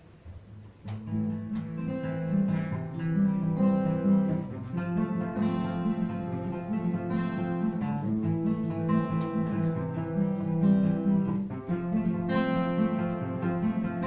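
Two acoustic guitars playing together, starting about a second in.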